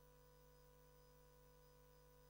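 Near silence with a faint, steady, unchanging hum.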